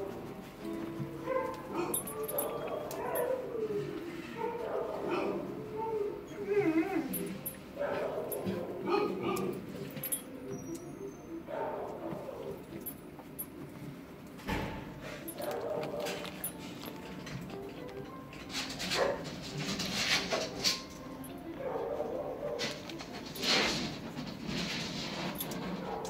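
Dogs in shelter kennels barking, yipping and whining, with wavering whines early on and several sharp barks in the second half.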